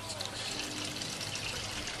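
Water pouring and trickling steadily from PVC pipe outlets into the hydroton-filled grow beds of a backyard aquaponics system, pumped up from the fish tank.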